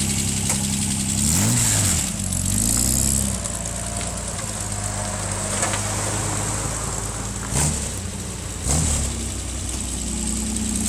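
3000cc V6 engine of a trike running steadily, revved up and back down twice in the first few seconds, then given two short throttle blips near the end.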